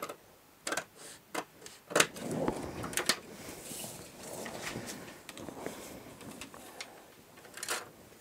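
Scissors snipping through pattern paper in a few sharp cuts over the first three seconds, then the cut paper strip rustling as it is handled and laid flat, with a couple more clicks near the end.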